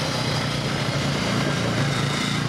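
Quad (ATV) engine running steadily as the machine drives away over icy ground.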